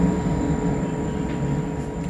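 Steady low background rumble and hiss with faint steady whining tones, easing slightly in level.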